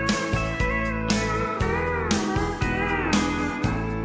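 Country song instrumental break: a steel guitar plays a sliding lead line over a band with a steady beat.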